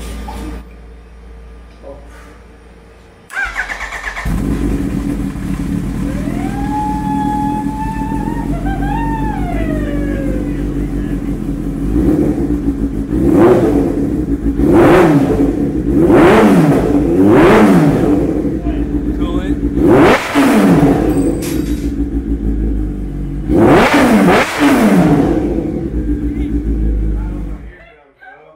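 Kawasaki Ninja H2's supercharged inline-four starting for the first time after a full rebuild: the starter cranks about three seconds in and the engine catches and idles. In the second half it is revved in a series of sharp throttle blips, then shuts off just before the end.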